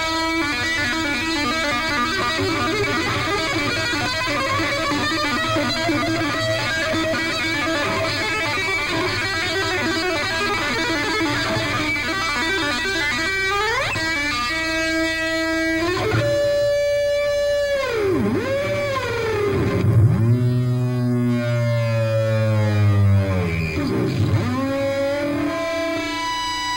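Distorted electric guitar played unaccompanied: a long, dense flurry of rapid notes, then a fast rising slide. It ends in held notes whose pitch swoops deeply down and back up again and again.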